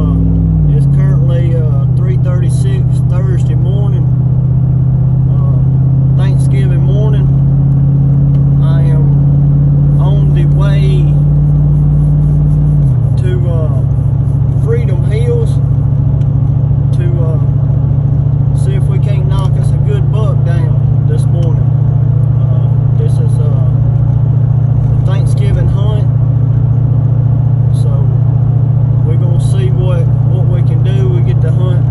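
Car driving at night, heard from inside the cabin: a steady engine and road drone that drops in pitch twice, once just after the start and again about halfway through.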